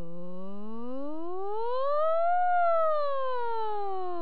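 A woman's voice sustaining an 'o' as a vocal siren: the pitch glides smoothly up from low to high, peaking and loudest about two and a half seconds in, then slides back down. It is the strong, as-loud-as-possible siren of a voice dynamic-range (phonetogram) test.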